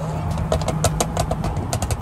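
Supercars cruising side by side on a highway: a steady low engine drone with road noise and a run of short, sharp clicks.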